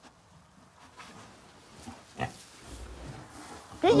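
Pig grunting softly, with one short grunt a little past halfway.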